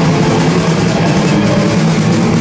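Rock band playing live and loud: electric guitars and bass held in a dense, steady wall of sound over drums and crashing cymbals.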